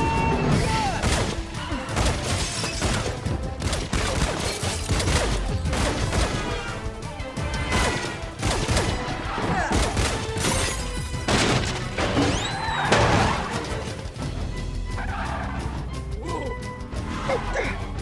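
Action-film soundtrack mix: score music under a run of crashes and impacts from a car chase, the loudest about thirteen seconds in.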